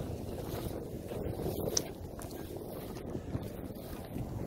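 Wind buffeting the phone's microphone: an uneven low rumble, with one brief faint click near the middle.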